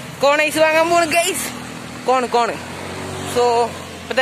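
A young man's voice talking in short phrases over the faint, steady low hum of a vehicle engine running.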